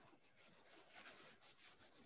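Very faint rubbing and scratching of a rubber cement pickup on cold-press watercolour paper, lifting off dried masking fluid in short irregular strokes.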